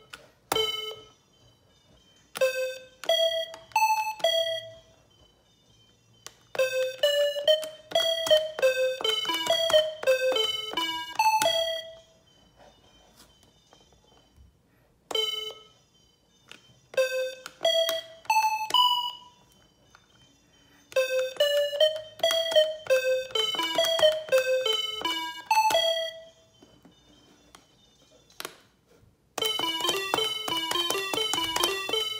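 Musical electronic calculator (AR-7778) playing a melody: each key press sounds a short electronic beep-like note from its built-in speaker, quick notes stepping up and down in pitch. The melody comes in several phrases of a few seconds each, with short silent pauses between them.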